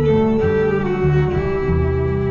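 Instrumental passage of a live acoustic trio: a violin holding long, steady notes over plucked upright double bass and electric guitar chords.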